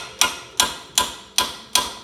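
Hammer striking a steel steering knuckle five times at an even pace, each blow ringing briefly. The blows are meant to knock the outer tie rod end's tapered stud loose, but the rusted stud is not yet coming free.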